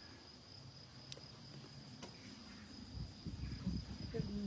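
Faint, steady, high-pitched trill of an insect, with a few soft low sounds near the end.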